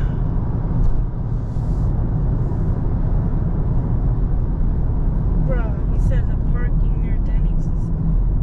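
Dodge Charger Scat Pack's 392 Hemi V8 and road noise droning steadily inside the cabin as the car cruises along.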